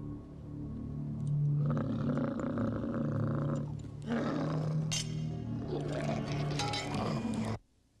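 Film soundtrack of a large monster roaring over a steady low orchestral drone. It cuts off suddenly just before the end.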